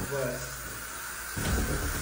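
Aerosol insecticide can spraying with a steady hiss, aimed at a cockroach.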